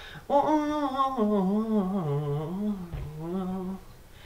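A young man's unaccompanied wordless singing: one long wavering vocal line that slides downward in pitch, with a brief break near the end.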